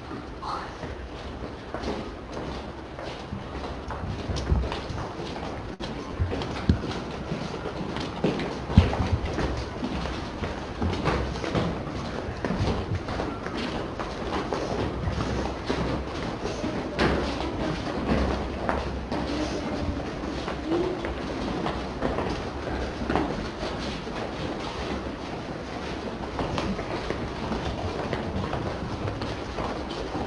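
A class of pupils walking in formation: many overlapping footsteps and shuffling with scattered small knocks, over a steady low hum.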